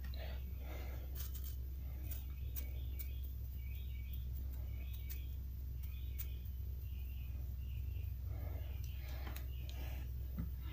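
Faint crinkling and light tapping of thin metal-leaf foil being patted onto a lure with a soft brush, over a steady low hum. A run of short, high chirps sounds through the middle.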